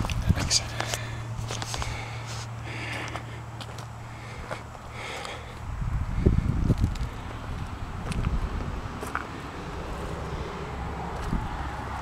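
Footsteps crunching on gravel, irregular and uneven, while a handheld camera is carried around a parked tractor. A steady low hum runs underneath.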